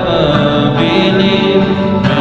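Live worship song: a man singing long-held notes over acoustic guitar and keyboard.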